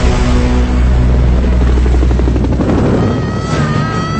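Helicopter rotors chopping in a fast, steady beat as the aircraft fly past, over a low soundtrack rumble. Near the end, thin, high wavering tones come in.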